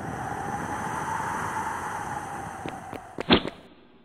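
A dense rushing noise that swells, holds and then fades away, with a few sharp clicks and one loud knock a little past three seconds in.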